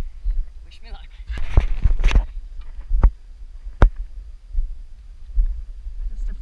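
Wind rumbling on the microphone during a climb up the steel cables on granite. There is a rustling stretch a second and a half in, then two sharp clicks of hands, hardware or shoes on the cable or rock.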